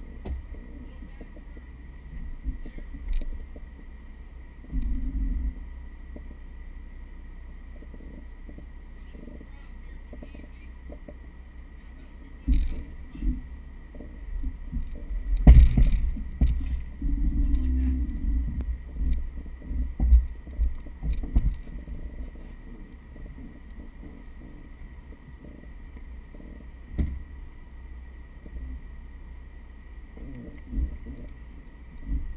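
Mercedes G320 4x4 crawling over rocks: a low, steady engine rumble with scattered thumps and clunks from the body and suspension meeting rock, the loudest a sharp knock about halfway through.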